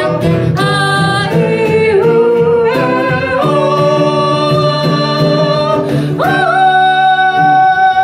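A woman and a man singing a Japanese song together to a strummed acoustic guitar. They hold one long note through the middle, then step up to another held note near the end.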